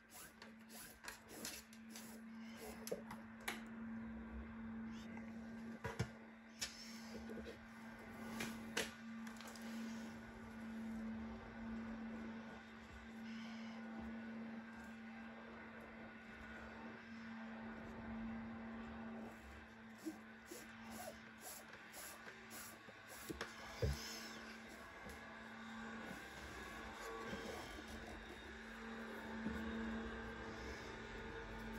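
Quiet handling of nylon 550 paracord being threaded and pulled through a braid on a wooden jig: faint rustle with scattered sharp clicks, over a steady low hum.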